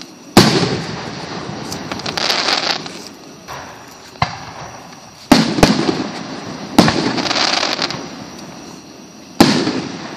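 Aerial firework shells bursting overhead: about six sharp bangs, two of them in quick succession around the middle. Each bang is followed by a hiss that fades over a second or two.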